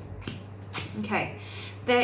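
Tarot cards being handled and pulled from the deck, with a few sharp card clicks, then a short wordless vocal sound rising in pitch about a second in and a woman's speech starting at the very end.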